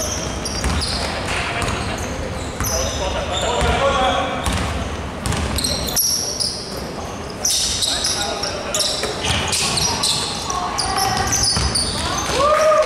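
Basketball bouncing on a hardwood court during play, with sneakers squeaking and players' voices, all echoing in a large sports hall.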